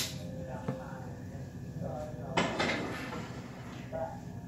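A stainless steel saucepan being handled and set onto a gas stove's burner: a sharp click, then a small knock, and a brief scraping noise about two and a half seconds in.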